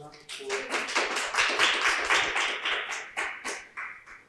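Audience applauding, starting about half a second in, strongest in the middle and dying away near the end.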